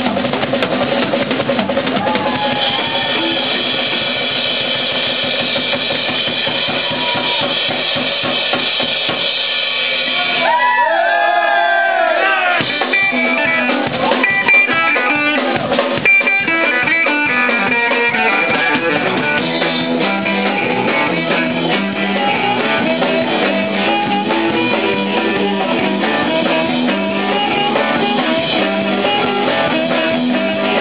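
Live band music with the drum kit out front, bass drum and snare strokes under held notes; about ten seconds in come a few bending, gliding notes, then a busy run of guitar notes over the drums.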